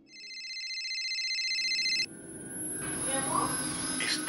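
Phone ringing with a high, fluttering electronic ring that grows louder over about two seconds and then cuts off suddenly. Quieter background sound with a faint voice follows near the end.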